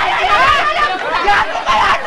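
Several people talking at once: overlapping, continuous voices.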